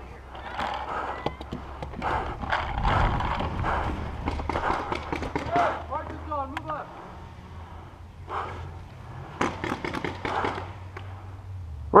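Shouting voices in the distance, mixed with scattered sharp pops of paintball markers firing and the rustle and knocking of the player moving with his gear.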